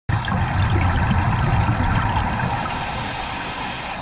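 Underwater sound picked up by a submerged camera: a continuous rush of water with a low rumble and faint crackling, the rumble easing off in the second half.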